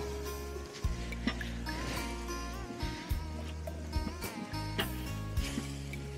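Background music: a soft, held bass line that changes note every second or so, with lighter high notes over it.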